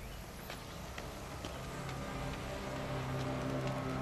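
Soft background music fading in: low sustained notes that grow steadily louder, with a few faint scattered clicks.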